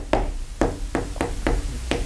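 Chalk tapping on a chalkboard as a formula is written: a run of short, sharp taps, about four a second.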